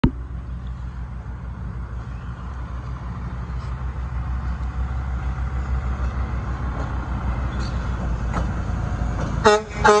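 Hi-rail dump truck's diesel engine rumbling steadily as it rolls along the rails, growing slowly louder as it approaches. Near the end it sounds its horn in two short toots.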